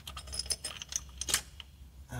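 Light, irregular metallic clicks and clinks of an L-shaped key turning a bolt out of an automatic transmission's valve body, with one sharper click about 1.3 seconds in.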